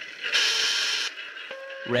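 Radio sound effect of a transmission break: a sudden burst of static hiss lasting under a second, followed by a short steady beep just before a voice returns over the radio.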